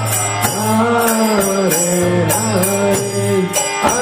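Harmonium holding a steady low drone under a man's voice singing a devotional chant melody in long, gliding phrases, with a pause near the end. A jingling percussion keeps a steady beat.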